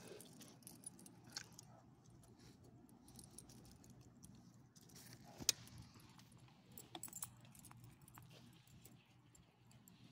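Faint metallic jingling and clicking of dog collar tags and leash clips as the leashed dogs move about, with one sharper click about halfway through.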